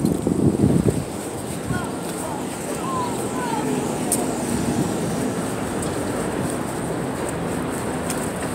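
Steady outdoor street noise of passing traffic, with wind on the microphone, louder in the first second.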